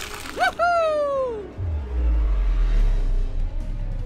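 Added sound effects: a short whoosh, then a pitched swoop that falls steadily in pitch over about a second. A deep low rumble sets in a little before halfway and carries on.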